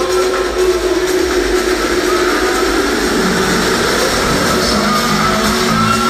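Loud techno from a DJ set over a festival sound system, in a breakdown with the deep bass pulled back and a sound sliding downward in pitch over the first few seconds.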